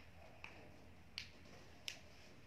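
Three light, sharp clicks about two-thirds of a second apart against near silence: taps on a smartphone as it is being typed on.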